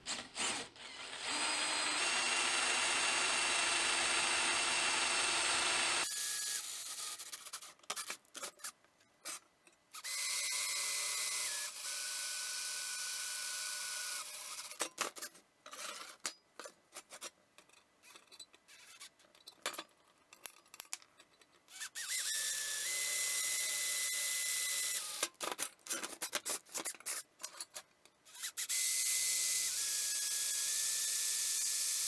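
DeWalt 20V cordless drill boring holes through a steel body panel. It runs in several stretches of a few seconds each, with scattered clicks and rattles in the pauses between. In one run the motor's whine steps down in pitch.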